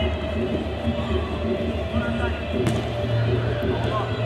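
Players' shouts during a small-sided football match, over a steady background drone of several held tones, with a single sharp knock about two-thirds of the way through.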